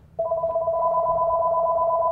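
Telephone ringing with a warbling two-tone ring that starts just after the beginning and lasts about two seconds: an incoming call.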